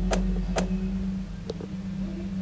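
Amplified pickup of a wall-listening contact-microphone spy device pressed to a wall: a steady electrical hum, with two sharp clicks in the first second and a fainter click about a second and a half in, as the probe is handled against the wall.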